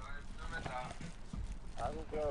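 Faint speech, in short broken phrases, over a low uneven background rumble.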